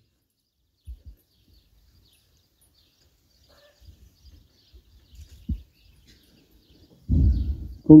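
A pause in a man's speech: mostly quiet, with a few faint low knocks and small handling noises. One sharper knock comes about five and a half seconds in, and the man's voice starts again near the end.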